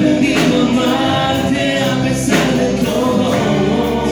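Live Christian worship music: several voices singing over a band with electric guitar.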